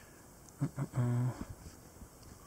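A man's brief, drawn-out hesitation sound, a level-pitched "ehh", about a second in, between otherwise quiet room noise.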